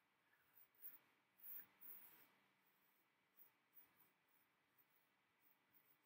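Faint scratching of a pencil on paper: a cluster of short strokes about a second in, then a few lighter, scattered ones.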